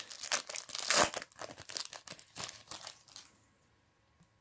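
Foil trading-card pack wrapper being torn open and crinkled by hand: a rapid, irregular crackle, loudest about a second in, that stops a little after three seconds.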